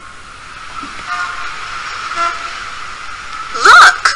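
Recorded street sound effect: traffic noise swelling, with short car-horn toots about a second in and again about two seconds in. A voice starts near the end.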